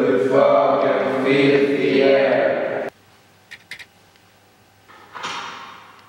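Several voices chanting together in a drawn-out, sing-song way, stopping abruptly about three seconds in. Afterwards come two or three faint clicks and a short hiss that fades away near the end.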